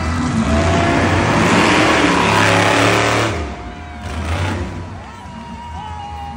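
Monster truck engine running loud for about three seconds, then dropping away suddenly. Arena music and PA sound continue underneath.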